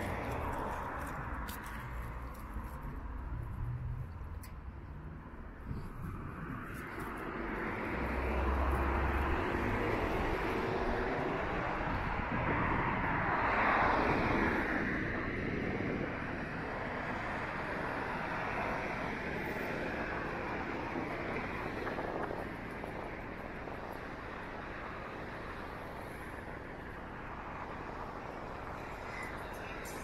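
Road traffic on a city street: cars passing one after another, with the loudest one going by close about halfway through, its noise swelling and then fading.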